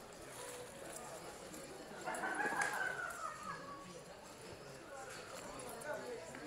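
Quiet background chatter of voices, with a louder, high, drawn-out voice-like sound about two seconds in that slowly falls in pitch over about a second and a half.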